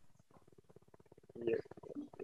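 A pause between speakers that is mostly near silence, with a faint, brief murmur of a man's voice about one and a half seconds in.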